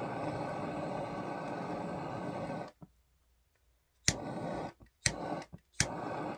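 Handheld butane torch lighter with its jet flame hissing steadily for nearly three seconds, then shut off. It is then clicked on three more times less than a second apart, each click followed by a short hiss of the flame.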